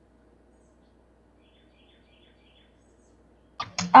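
Near silence: faint room tone with a low hum, then a girl's voice begins speaking near the end.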